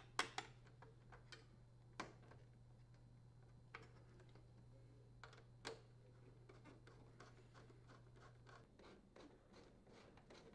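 Faint, scattered clicks and light scrapes of screws being driven by hand with a Phillips screwdriver into a dishwasher's metal door panel, with a run of small ticks near the end, over a low steady hum that stops shortly before the end.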